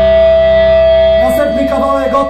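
Electric guitar amplifier feedback: one steady, loud tone ringing on from the amps after the band stops playing. Voices come in over it about a second in.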